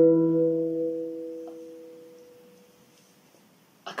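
A single hand-struck handpan note ringing on and fading steadily away over about three seconds until it is gone: the natural decay of a note that cannot be sustained without striking again.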